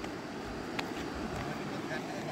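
Sneakers stepping across wet sand: soft footfalls over a steady background hiss.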